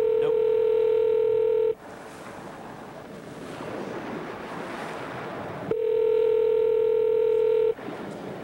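Telephone ringback tone heard over the phone line as an outgoing call rings: a steady tone sounding twice, about two seconds each, with a gap of about four seconds of line hiss between.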